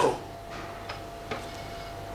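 Quiet room tone in a pause: a faint steady hum with a few soft, irregular clicks.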